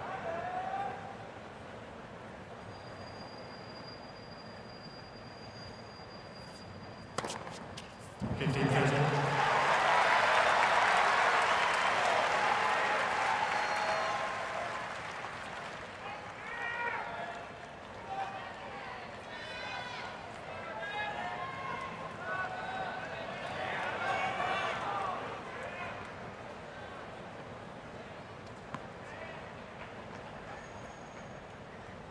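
A few quick tennis ball strikes ending a point, then crowd applause and cheering that swells suddenly and fades over about five seconds. After that come scattered shouts and voices from spectators.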